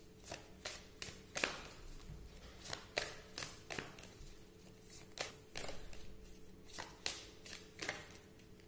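Oracle card deck being shuffled by hand: a run of short, irregular riffs and taps of cards, about one or two a second.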